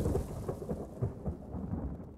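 Logo-intro sound effect: a thunder-like rumble dying away after a boom, with faint crackles, fading out toward the end.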